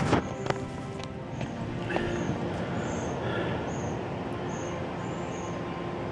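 Footsteps crunching through dry leaf litter and bottlebrush seed pods, with a few sharper snaps, over a steady background with short high notes repeating about twice a second.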